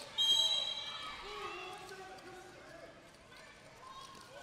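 A short, steady, high-pitched blast of a referee's whistle about a quarter-second in, lasting roughly half a second, followed by faint voices in the hall that fade away.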